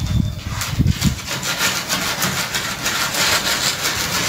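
A long straightedge rule scraping across fresh, wet concrete as it is drawn over the floor to screed it. The scraping goes on steadily from about half a second in.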